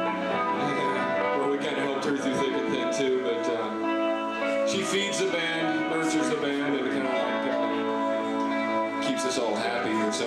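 Guitar playing steadily, with sustained notes ringing, and a voice coming through over it at times.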